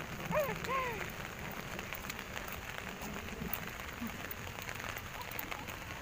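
Heavy rain falling steadily on a paved road.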